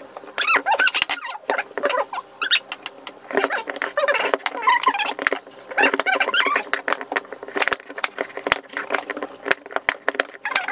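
Kitchen knife cutting a raw sweet potato on a bamboo cutting board: many irregular sharp knocks as the blade goes through and hits the board. Squeaky, voice-like sounds come in between.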